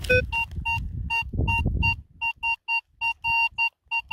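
Metal detector beeping as its search coil is swept over a coin lying on the soil surface. A short, mid-pitched beep repeats about three times a second, with one held a little longer near the end, signalling the metal target. A low rumble, likely handling noise or wind, runs under the first half.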